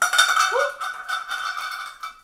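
Empty tin cans and plastic containers clattering and scraping as they are pulled off a low kitchen shelf, with a steady high-pitched squeal under the rapid clatter.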